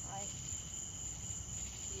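Crickets trilling steadily, a continuous high-pitched tone, with a faint voice briefly just after the start.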